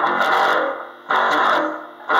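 Gear4music Precision-style electric bass played through an amp with a little reverb: two heavy struck notes about a second apart, each ringing and dying away before the next.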